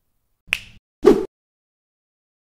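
Two short, sharp snap-like clicks about half a second apart, the second fuller and lower than the first.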